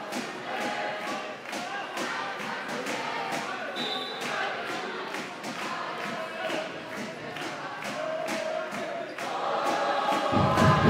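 Spectators' voices chanting and singing together, echoing in an indoor sports hall, with many sharp knocks and thuds scattered throughout. It swells near the end.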